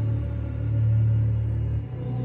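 Dark, slow music held on deep sustained bass notes, with a brief dip and a change of note just before the end.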